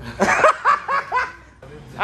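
A young man laughing: a quick run of about five short bursts of laughter that dies away about a second and a half in.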